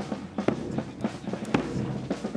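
Marching band playing, with saxophones and flute over drums and cymbals; two heavy drum beats about a second apart stand out.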